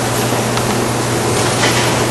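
Steady, loud hiss with a low hum underneath: the background noise of a lecture-room recording, with a few faint clicks in the second half.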